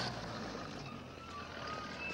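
Steady outdoor ambience, a low rumble under a hiss, with a few faint brief high tones.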